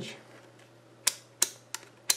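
Rotary function selector switch of a digital multimeter being turned, clicking through its detents: two sharp clicks about a third of a second apart, then a fainter one.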